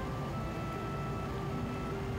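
Quiet background music of soft sustained notes, with new notes entering partway through, over a low steady rumble.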